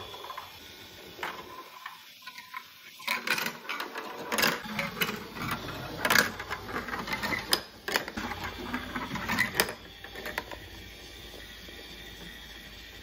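Marbles rolling and clattering through a VTech Marble Rush plastic track set, a quick irregular run of knocks and rattles from about three seconds in until about ten seconds in.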